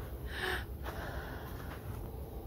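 A woman's short, sharp breath about half a second in, with a fainter one near the end, over a low steady rumble.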